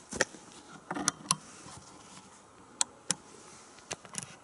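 A handful of sharp, irregular clicks and small handling knocks from a handheld flashlight as it is handled and switched back on, several clustered about a second in.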